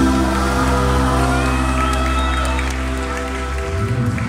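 Live band holding a final sustained chord that rings out and breaks off near the end, with a few cheers from the crowd over it.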